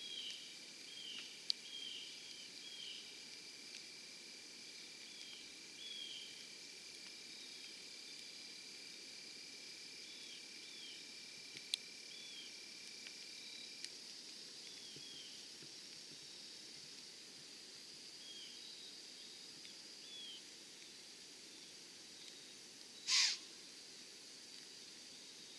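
Quiet field ambience: a steady high insect drone with many short, high chirps scattered through it, and a few faint clicks. One brief, loud, rushing burst comes near the end and is the loudest sound.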